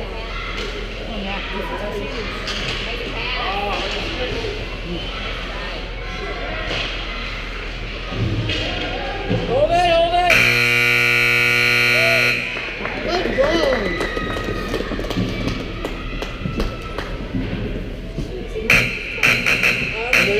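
Ice rink scoreboard buzzer sounding once, a steady, harsh tone lasting about two seconds in the middle, the loudest sound here. Spectators' voices and shouts can be heard around it.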